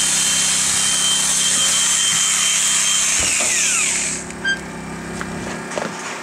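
A small high-pitched motor running steadily with a hiss. About three and a half seconds in it is switched off and winds down with a falling whine, leaving a quieter background.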